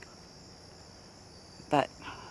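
Steady, high-pitched chorus of crickets, unbroken throughout.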